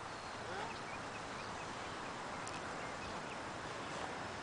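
Quiet outdoor ambience: a steady faint hiss with faint, scattered bird chirps.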